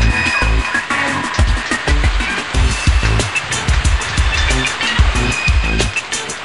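Electronic intro music with a heavy, driving beat.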